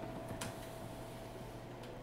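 Quiet room tone with a faint steady tone held for most of the moment, and two soft clicks, one about half a second in and one near the end.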